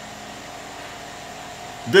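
Steady background hum and hiss with a faint steady tone: room tone. A voice starts again at the very end.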